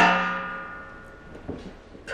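A metal tray tabletop clanks down onto its folding stand and rings, the ringing fading away over about a second and a half, with a faint knock near the end.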